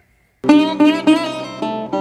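Intro music on a plucked acoustic guitar, quick picked notes with sharp attacks, starting about half a second in after a brief silence.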